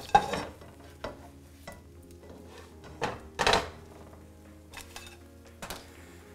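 A plastic spatula scraping and knocking in a nonstick frying pan and against a ceramic plate as a fried egg is slid out onto the plate: a few light taps and scrapes, with a longer scrape about halfway through.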